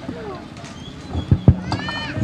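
Shouted high-pitched calls from people on a football pitch, a longer rising-and-falling call near the end, with two sharp thumps close together about a second and a half in.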